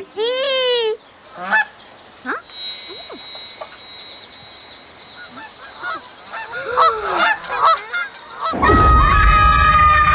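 A child's short exclamation at the start, then scattered short calls and noises. About eight and a half seconds in, several children scream together, loud and held for about two seconds.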